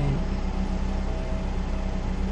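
A car's engine idling, heard from inside the cabin as a steady low hum.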